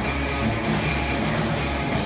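A rock band playing live, with electric guitars over a drum kit and bass, loud and continuous.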